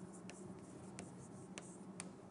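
Faint writing on a lecture board: a scatter of short strokes and taps over a steady low room hum.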